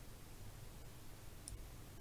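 A faint computer mouse click about one and a half seconds in, over a low steady hum.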